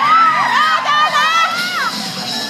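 Several people cheering with high-pitched whoops and shrieks, many rising-and-falling cries overlapping, with dance music underneath; the cries die away near the end.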